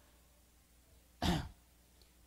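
A man clears his throat once, briefly, about a second in, close to the microphone; the rest is quiet room tone.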